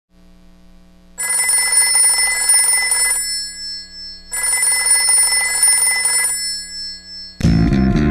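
Telephone bell ringing twice, each ring about two seconds long with a pause of about a second between them, over a faint hum. Music comes in suddenly near the end.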